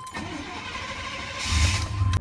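A truck's engine started with the key: the starter cranks for about a second and a half, then the engine catches with a louder low rumble near the end. A steady high dashboard warning tone sounds throughout.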